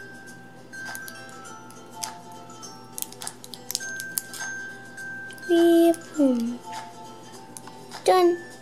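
Background music with long held notes, with light clicks and taps of plastic toy figures being handled. A little over halfway through, the loudest sound: a brief voice sound, held and then falling in pitch.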